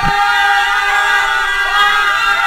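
A group of young boys, a youth handball team, shouting their team war cry together, many voices in unison holding one long cry.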